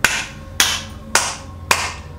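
A man clapping his hands in a slow, steady rhythm: four sharp claps about half a second apart.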